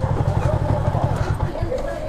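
A motorcycle engine idling with a steady low rumble, with muffled voices in the background; the rumble drops off about one and a half seconds in.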